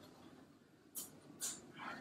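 A person's breathing during hard exercise: two quick, sharp exhales about a second in, then a softer breath near the end.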